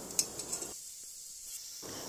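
A metal spoon clicking twice against an aluminium pressure cooker as a masala is stirred, over faint sizzling, then a stretch of near silence.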